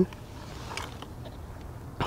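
Low, steady background noise in a pause between speech, with one faint, short sound about three-quarters of a second in.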